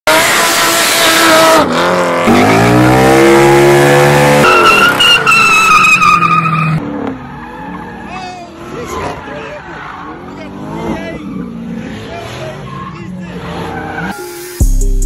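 High-performance car engines revving hard with tires squealing in burnouts: the engine note climbs steeply about two seconds in, then a steady high tire squeal follows. The second half is quieter, with voices and tire noise.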